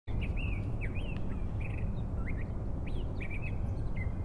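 Small birds chirping over and over, short calls that rise and fall in pitch, over a steady low rumble of outdoor noise.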